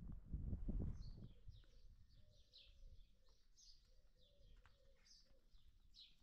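Small birds chirping in short, high, falling notes, repeated every half second or so, over faint low cooing. A brief low rumble comes in the first second.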